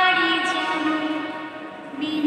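A woman singing solo into a microphone, holding one long note that wavers slightly and fades near the end.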